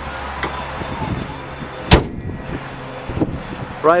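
Honda Ridgeline pickup's hood slammed shut: one loud, sharp bang about two seconds in, with a faint click about half a second in.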